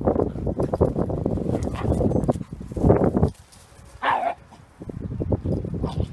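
Two dogs play-fighting, with rough, scuffling dog noises for the first three seconds and again near the end, and a short high yelp about four seconds in.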